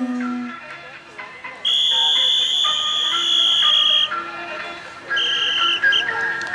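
Procession wind instruments: a low horn tone dies away in the first half-second, then a shrill high whistle is held for about two and a half seconds and blown again briefly near the end, over fainter sustained instrument notes.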